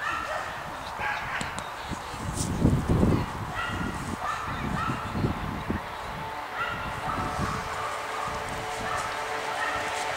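A yellow Labrador retriever whining and yipping in short high-pitched cries, excited by the chase lure. There is a louder low rumble about three seconds in.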